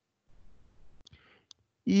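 Two short clicks about half a second apart from working the computer's keyboard and mouse, over faint room noise.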